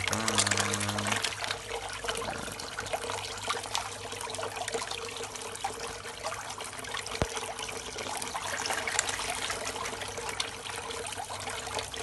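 Water pouring from a plastic pipe outlet into a fish tub: a steady splashing trickle onto the water surface.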